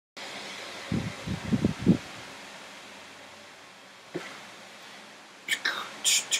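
Steady hiss with a quick run of about five low thumps a second in and a single thump about four seconds in. Near the end, sharp breathy mouth-percussion sounds of beatboxing begin.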